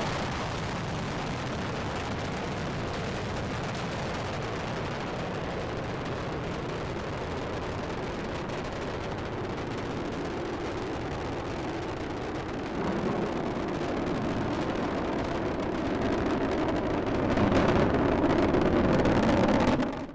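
Space Shuttle Discovery's solid rocket boosters and main engines during ascent: a continuous rocket roar that swells louder about two-thirds of the way through and again near the end.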